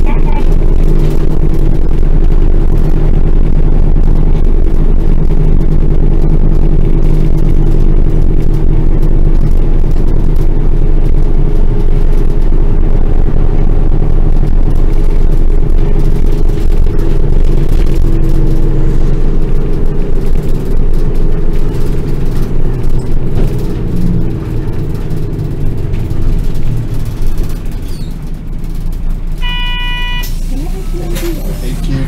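Bus engine and drivetrain droning steadily at cruising speed, heard from inside the cabin, turning uneven and quieter over the last several seconds as the bus slows. A short electronic chime sounds at the very end, the kind that comes before an onboard next-stop announcement.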